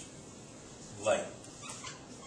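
A man's voice says one word about a second in, with a dry-erase marker squeaking on a whiteboard as it writes, most plainly a short squeak near the end.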